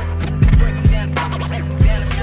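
A 1997 hip-hop record playing from vinyl: the TV Track (instrumental) version of the song, a beat of kick drums and hi-hats over a held bass line, with no rapping in this stretch.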